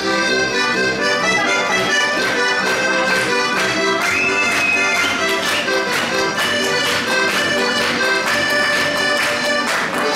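Heligónka, a Slovak diatonic button accordion, playing a lively folk tune, its reed chords pulsing in a steady rhythm.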